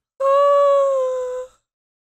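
A woman's long, high-pitched whine, held steady for about a second and a half with a slight fall in pitch, then cut off.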